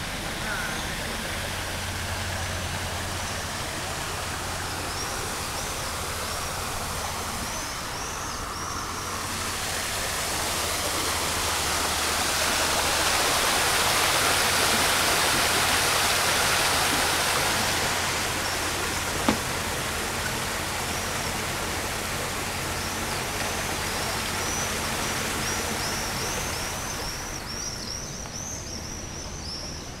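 Outdoor walking ambience dominated by a steady rushing noise that swells for several seconds in the middle and then eases off, over a low hum. Quick runs of high chirps come near the start and again through the last third, and a single sharp click sounds a little past the middle.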